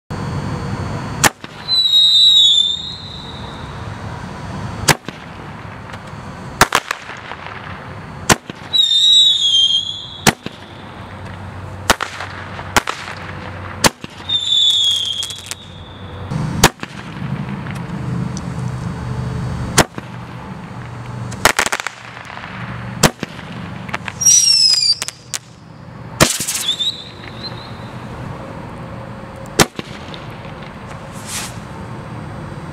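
Crazy Aces Roman candles firing shot after shot, each a sharp pop a second or few apart. Several pops are followed by a short whistle falling in pitch.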